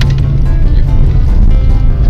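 Background music over a loud, steady low rumble of car engine and road noise heard from inside the moving car.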